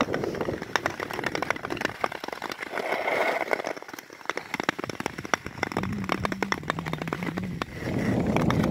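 Ice skates gliding over thin, clear lake ice, with a dense, irregular run of sharp crackling clicks and pings from the ice.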